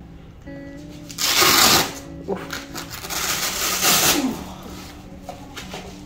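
Two loud rustling bursts of handling noise, about a second in and again around four seconds, over soft background music with steady low notes and faint voices.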